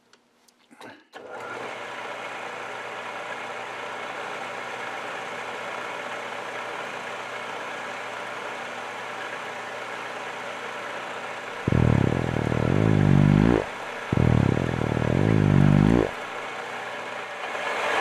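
Metal lathe starting about a second in and running steadily as the tool takes a cut along a bar. In the second half come two loud, wavering, fart-like blurts of about two seconds each, jokingly passed off as gas pockets in the material.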